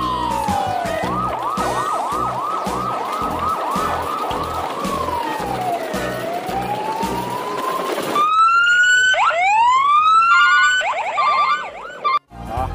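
Electronic police-style siren: a slow wail that falls and rises, switching for a few seconds to a rapid yelp of about three sweeps a second. At about eight seconds a louder, brighter siren takes over with quick upward sweeps, followed by short beeping tones near the end.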